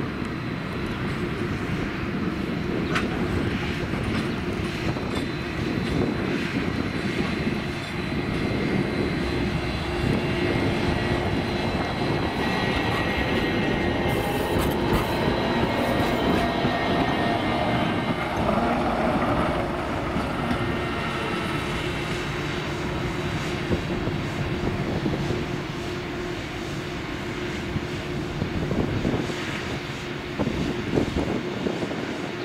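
Low-floor city trams running on street track: a steady rumble of wheels on rail with a steady hum from the running gear and motors. One tram passes close by around the middle, with a few brief sharp rail noises.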